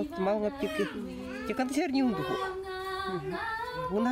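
A young woman singing solo without accompaniment, her voice moving through gliding phrases with one long held note a little past the middle.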